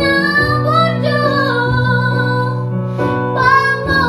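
A teenage girl singing a slow solo vocal line in long, held notes that glide between pitches, over instrumental accompaniment; she takes a short breath about three seconds in.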